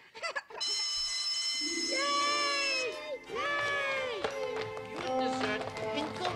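Cartoon soundtrack: children laughing, then music under which a group of children gives two long, rising-and-falling cheers.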